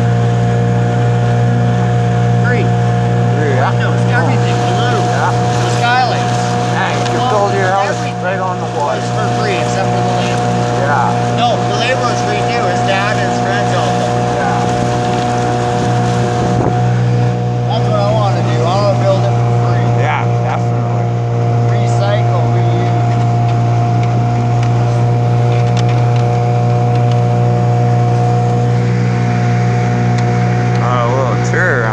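A motorboat's engine running steadily while the boat is under way, a constant drone at an unchanging pitch.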